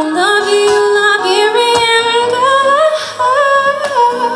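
A woman singing a long, held vocal line that slowly climbs in pitch, over soft acoustic guitar accompaniment.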